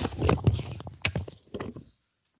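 Irregular knocks and handling noise close to a microphone, mixed with some faint, muffled voice. The sound then cuts off abruptly to dead silence as the microphone drops out of the call.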